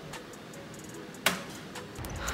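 A single sharp click about a second in, from handling a front-loading washing machine while it is being loaded.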